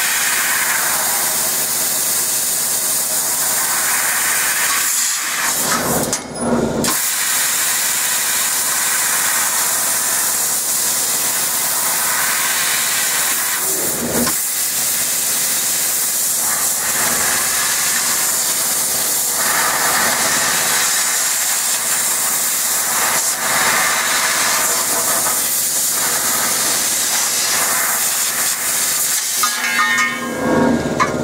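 Fiber laser tube cutter cutting a rectangular steel tube: a loud, steady hiss of assist gas from the cutting head. It breaks off briefly about six seconds in.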